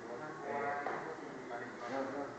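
Indistinct talking by people, with voice pitch rising and falling, strongest about half a second in.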